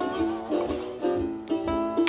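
Light instrumental background music led by a plucked string instrument.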